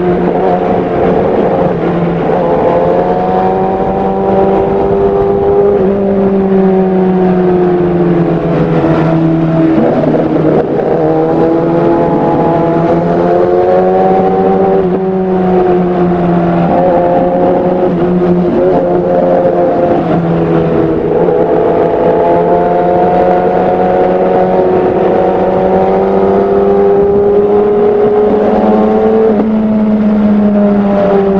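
A 2017 Kawasaki ZX-10R's inline-four engine running under load while the bike is ridden through bends. Its pitch drifts up and down, with a few sudden small steps, over steady wind noise.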